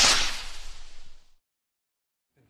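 Whoosh sound effect of a TV news logo sting: a sudden loud swell of hiss with a low rumble underneath that fades out over about a second and a half.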